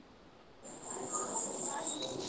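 A faint, steady high-pitched tone in the background, starting about half a second in after a moment of dead silence.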